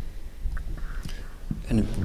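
A short pause in the talk, filled with a low steady hum and a few faint breathy rustles. Then a man starts speaking into a microphone near the end.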